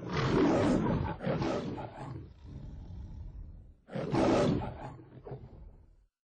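Big cat roaring, dropped in as a sound effect: two loud roars, the second starting about four seconds in.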